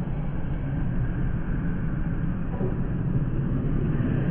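Skateboard wheels rolling on a concrete bowl: a steady low rumble.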